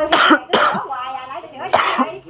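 A woman coughing: two harsh coughs close together at the start and another near the end, with a little voice between them.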